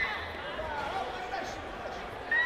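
Spectators' voices chattering and calling out in an indoor sports hall, with a loud raised shout at the start.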